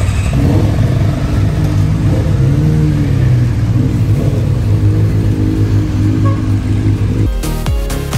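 Motorcycle engines running and revving as the bikes pull away, the pitch rising and falling. Near the end, electronic dance music with a heavy beat cuts in.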